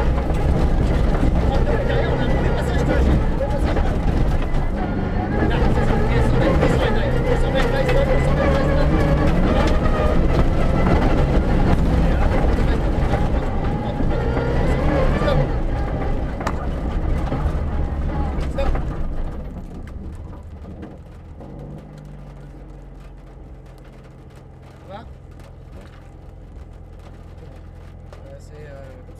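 Rally car engine heard from inside the cabin, running hard on a dirt stage with revs rising and falling. About nineteen seconds in it drops away to a quieter, steady low running as the car slows.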